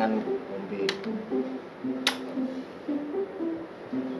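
Background music: a melody of short plucked-string notes, with two sharp clicks, about one second and two seconds in.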